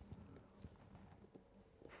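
Near silence with a few faint, light ticks from a stylus writing on a tablet screen.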